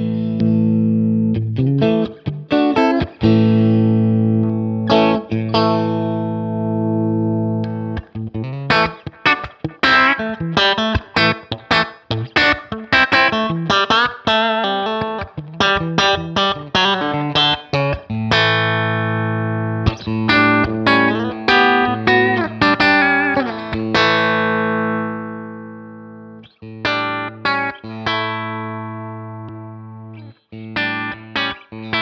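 Electric guitar, a Rittenhouse S Model, played through a Jam Pedals Boomster booster pedal into a Sound City SC20 amp, with a driven, lightly distorted tone. Chords and fast lead runs, then a held chord about halfway through that rings and slowly dies away, before more notes near the end.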